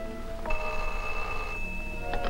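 An old desk telephone bell rings for about a second, starting half a second in, over film-score music holding sustained chords.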